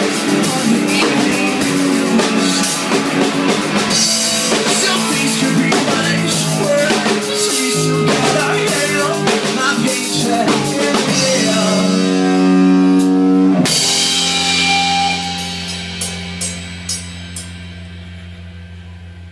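A rock band playing live in a room, with drum kit and electric guitars. After about 14 seconds the song ends on a final held chord that rings out and fades, with a few last drum hits.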